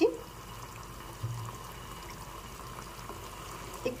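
Yogurt-based paneer curry simmering in a non-stick kadai, a soft, steady bubbling hiss.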